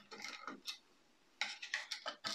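A small screwdriver makes a run of light clicks as it works screws out of the battery box on a model car chassis. The clicks stop dead for about half a second midway, then resume.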